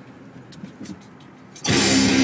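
Low, steady cabin noise of a car rolling slowly, with a few faint clicks, then loud guitar music starts abruptly near the end.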